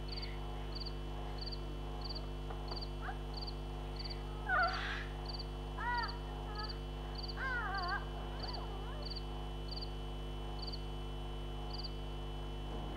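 A short, high chirping call repeating evenly about one and a half times a second, like a nature sound effect of animals calling, over a steady electrical hum. A few louder curved cries come in around the middle, the loudest about four and a half seconds in.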